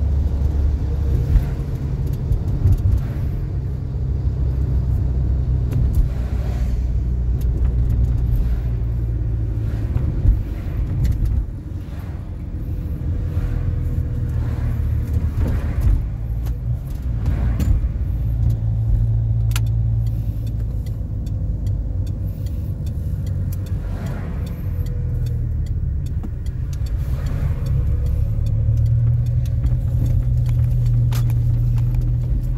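A car's engine and road noise heard from inside the cabin while driving: a steady low rumble that dips briefly about twelve seconds in, with a faint steady whine and a few light clicks.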